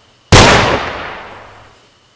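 A single gunshot, sudden and loud, with a long echoing tail that dies away over about a second and a half.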